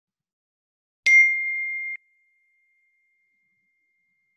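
A single bright bell-like chime struck once about a second in. It rings clearly for about a second, then fades to a faint lingering tone.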